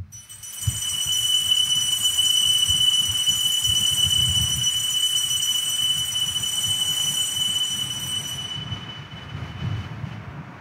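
Altar bells ringing steadily as the chalice is elevated after the consecration at Mass: a high, sustained ringing that fades out near the end.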